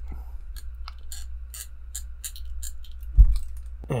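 Irregular light clicks and crunches from the plastic and die-cast armour joints of a sixth-scale Iron Man Mark V figure being worked by hand at its stiff ankle joint, with one dull thump about three seconds in.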